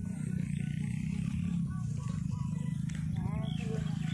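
Wind buffeting the microphone: a steady, fluttering low rumble, with faint voices in the background.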